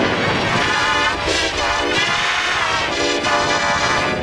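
Music from a Japanese McDonald's TV advert, pitch-shifted down and layered into several transposed copies in the 'G-Major' effect, giving a thick, detuned chorus of melody lines.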